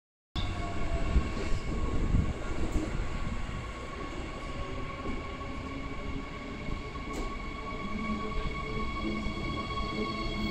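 Queensland Rail SMU280-series electric multiple unit pulling into a platform: a rumble of wheels on track, loudest in the first couple of seconds, with a steady electric whine of several tones running throughout.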